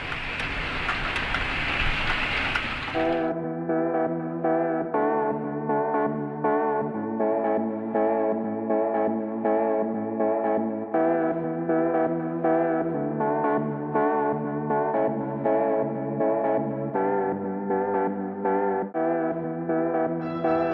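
An OO-gauge model train running on the layout, a steady rushing noise, for about the first three seconds. It is then cut off by background music: sustained chords with notes repeating about twice a second.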